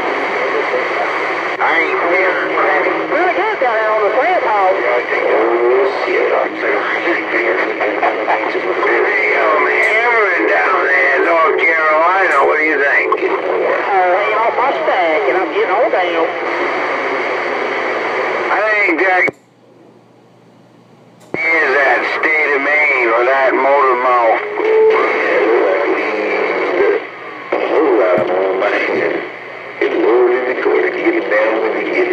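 Voices of distant stations coming in over a Galaxy CB radio's speaker, thin and narrow-sounding over a hiss of static and hard to make out. The signal cuts out for about two seconds partway through, then the talk comes back, with two shorter drops near the end.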